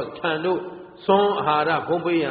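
Speech only: a Burmese Buddhist monk's voice delivering a dhamma sermon, with a short pause about halfway.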